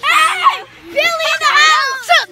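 Children's laughter and high-pitched voices: a burst of laughing at the start, then after a brief pause more excited children's voices.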